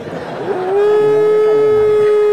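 A man's voice sliding up into one long, steady, high held note about half a second in, loud and clear.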